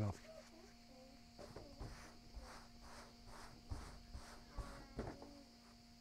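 Faint outdoor ambience: insects chirping in an even rhythm of about two pulses a second, over a faint steady hum.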